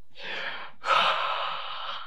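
A man's breathy, voiceless gasp of mock shock: a short rush of breath, then a longer, louder one from about a second in.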